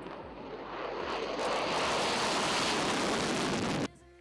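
Single-engine jet fighter (F-16) taking off: jet engine noise building to a loud, steady rush as the plane lifts off, then cut off suddenly just before the end.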